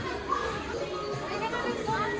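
Indistinct background voices of shoppers, children's voices among them, as faint chatter.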